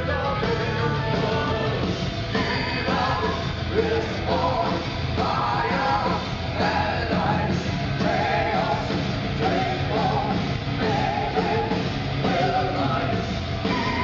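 Symphonic metal band playing live, several singers singing together with vibrato over bass, guitars and drums. The sound is heard from the crowd in a club, through a camera microphone.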